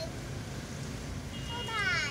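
Steady outdoor street ambience. Near the end, a short pitched call falls in pitch.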